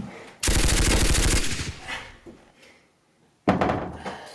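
A rapid burst of gunfire like a machine gun, about a second long, dying away. Near the end comes a sudden loud thump.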